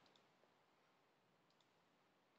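Near silence: faint room hiss with a few soft computer-mouse clicks near the start and about a second and a half in, as a dropdown option and an Apply button are clicked.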